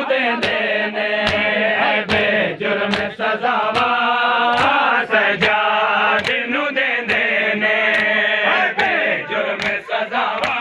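A group of men chanting a Punjabi nauha in unison, with the crowd's open-hand slaps on bare chests (matam) marking an even beat of about one strike every 0.8 seconds.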